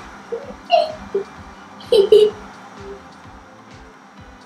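A young girl giggling in a few short bursts, the loudest near the middle.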